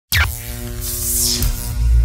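Cinematic intro music: it starts suddenly with a hit and a falling sweep, then a whoosh sweeps down about a second in, over a deep, throbbing bass.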